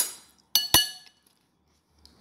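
Steel spoon clinking against a glass mixing bowl: the fading ring of one knock at the start, then two quick clinks about half a second in, each ringing briefly.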